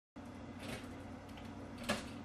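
Faint steady low kitchen hum, with a single sharp click near the end as a pop-up toaster is worked.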